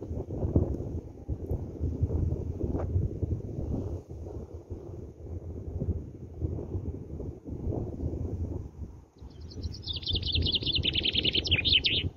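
Wind buffeting the microphone with an uneven low rumble. From about nine and a half seconds in, a bird sings a fast trill of high notes that steps downward in pitch.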